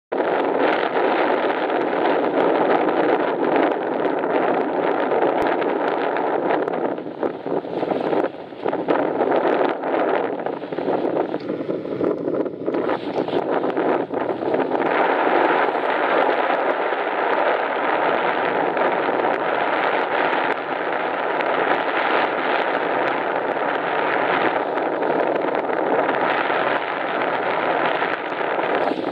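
Steady wind buffeting the microphone over the wash of water along a sailboat's hull.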